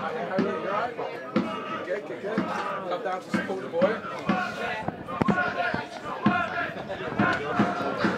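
Football supporters chanting in the stand, with a drum beaten about once a second.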